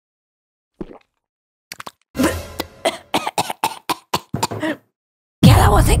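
A woman coughing and spluttering in a quick run of short bursts after tasting a home-mixed drink, preceded by a few faint clicks.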